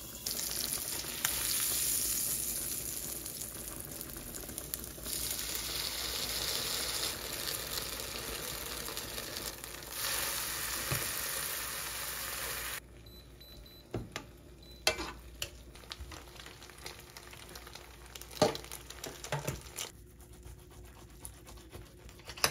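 Food sizzling steadily in a frying pan on an induction hob. About thirteen seconds in the sizzle cuts off suddenly, and a few light clinks and knocks of utensils on cookware follow.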